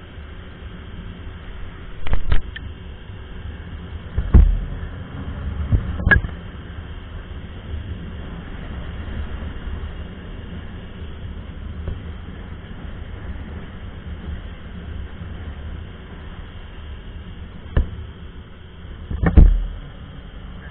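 Honda Biz 100's small single-cylinder four-stroke engine running steadily at top speed under the load of a passenger, under a constant rush of wind. Five loud, low thumps of wind buffeting the microphone break in: two early on, one a few seconds later, and two near the end.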